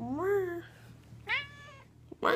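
Domestic cat meowing twice: first a longer meow that rises and falls, then a shorter one that falls in pitch. It sounds like a cat its owner calls mad.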